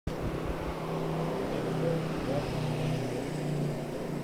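Street traffic: the engines of passing vehicles, a steady hum whose pitch shifts slowly up and down.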